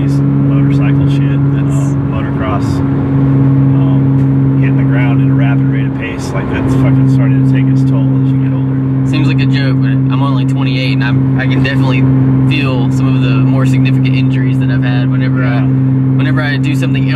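Porsche Cayman S flat-six engine droning steadily at highway cruise, heard inside the cabin. The engine note dips briefly about six seconds in, then settles back to the same steady drone.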